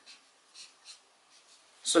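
Pen writing on paper: a few faint, short scratching strokes as a figure is written.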